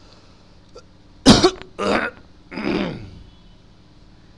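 A man clearing his throat: three short bursts in quick succession about a second in, the first sharp and the loudest, the last falling in pitch.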